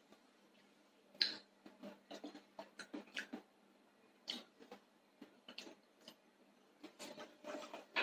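Faint handling noise of a small plastic tub being picked up and turned in the hands: a string of small irregular clicks and taps starting about a second in.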